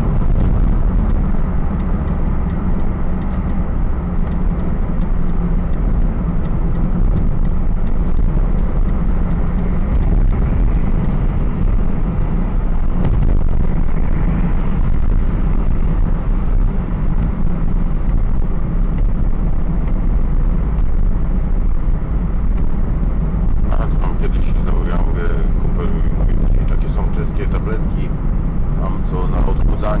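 Steady low rumble of a car's engine and tyres heard from inside the cabin while it drives at road speed, with voices coming in faintly near the end.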